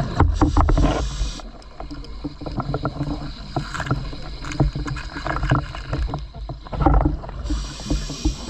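Scuba diver's breathing heard underwater through the regulator: a loud rush of exhaled bubbles in the first second or so and again near the end, with quieter stretches between full of small clicks and knocks.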